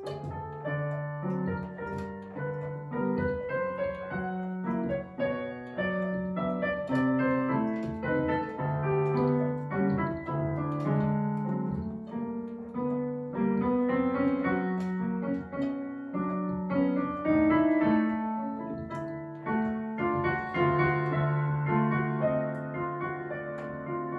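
Solo classical piano piece played on a digital piano at a moderate tempo: a melody in the middle and upper range over held lower accompaniment notes, swelling and easing phrase by phrase.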